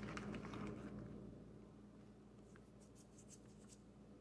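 Faint rustling of a plastic bag of powdered sugar as a hand reaches into it, fading after about a second into near silence with a few faint soft ticks near the end.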